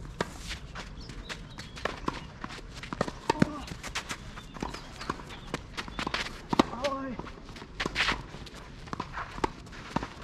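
Tennis rally on a clay court: sharp racket strikes on the ball and ball bounces, with the players' shoes scuffing on the clay between shots.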